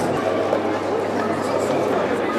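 Many voices talking at once, a steady crowd chatter.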